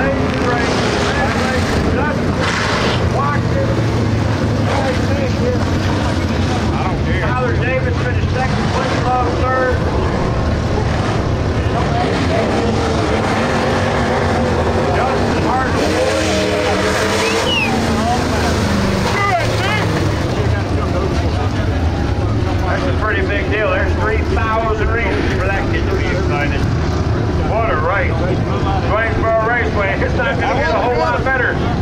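Dirt-track race car engines running at low speed, a steady low drone throughout, with people's voices over it.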